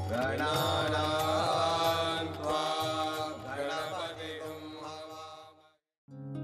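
Mantra-style chanting sung over instrumental music, the voice gliding in pitch; it fades out near the end.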